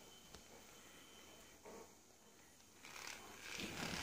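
Mostly quiet, with a faint click early and faint rustling and shuffling that grows over the last second or so, as a dog moves about on its bedding.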